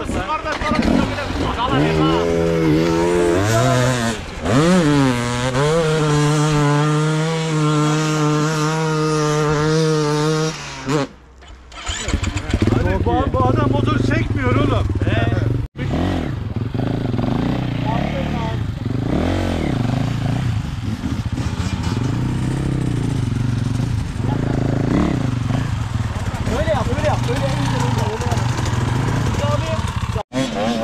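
Enduro dirt bike engine idling steadily, with a quick rev up and down about four seconds in. After a break partway through it runs on at a lower idle, with people talking over it.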